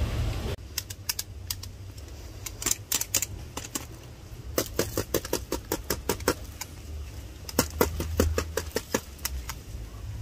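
Kitchen scraps being handled and dropped onto a compost heap: a run of irregular light clicks and crackles, densest about halfway through and again near the end, over a low steady rumble.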